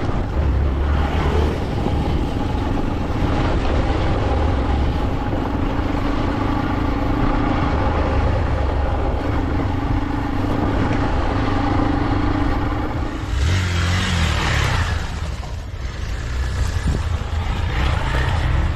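Hero Xpulse 200 single-cylinder motorcycle engine running steadily under way on a dirt trail, with a louder rush of noise about thirteen seconds in.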